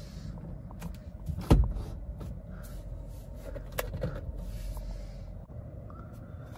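Steering column tilt lever being released and locked while the wheel is adjusted: a few clicks, with a loud clunk about one and a half seconds in and another sharp click near four seconds, over a steady low hum in the car's cabin.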